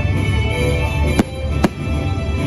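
Show music playing, with two sharp firework shell bangs a little over a second in, about half a second apart.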